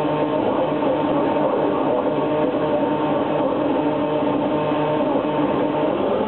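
Live noise music: a continuous dense, distorted noise from amplified electronics, with several steady droning tones held underneath it.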